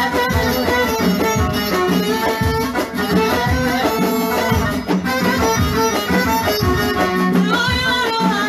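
Live traditional folk band music: a melodic lead over a steady drum beat.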